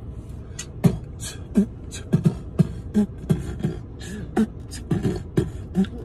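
A person beatboxing: an even rhythm of mouth-made kick-drum thumps and snare-like clicks, a few strokes a second.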